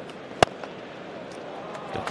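Cricket bat striking the ball once for a drive: a single sharp crack about half a second in, over steady crowd noise in the ground.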